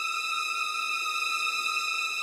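Background score: a steady, unbroken high drone of a few held tones, with no beat.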